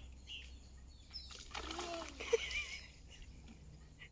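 Faint splashes of a sandalled foot stepping in shallow marsh water, with a short faint call about halfway through.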